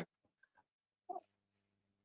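Near silence between sentences of speech, broken about a second in by one brief, short sound, followed by a faint low hum.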